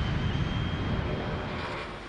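Jet engine of a Lockheed U-2 spy plane climbing out overhead: a steady rushing noise with a faint high whine, fading away near the end.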